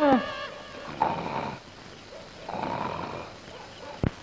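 A man snoring in his sleep: two long, noisy snores about a second and a half apart.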